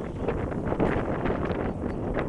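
Loud, dense rushing and crackling of wind buffeting the microphone, with rustling.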